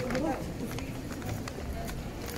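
Crowded pedestrian street: indistinct voices of passersby close by, over a steady murmur, with footsteps on paving at a walking pace.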